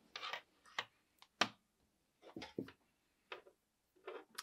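A cord being handled and its plug pushed into the socket on a rotary attachment's motor. There are a few faint rustles and small clicks, the sharpest about a second and a half in.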